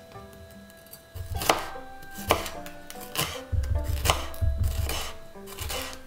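Chef's knife slicing a red bell pepper into strips on a wooden cutting board: crisp knocks of the blade on the board, about one a second, starting about a second and a half in.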